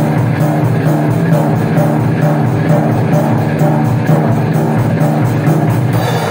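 An acoustic drum kit played hard with sticks, a dense run of snare, tom and cymbal hits, along with a recording of the heavy rock song.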